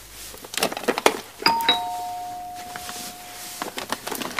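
Two-tone ding-dong doorbell chime: a higher note, then a lower one that rings on for about two seconds. Just before it, short rustles and clatter of things being handled in a basket.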